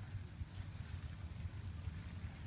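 Wind buffeting the microphone: an uneven low rumble with a faint hiss above it.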